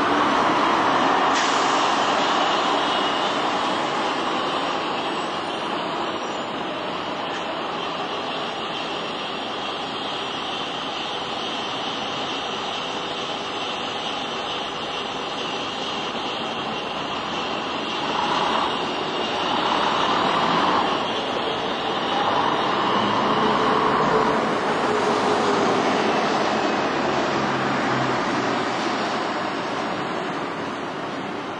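Diesel engine of a double-decker bus running as it passes close by and pulls away, over steady street-traffic noise. The engine noise swells again in the second half.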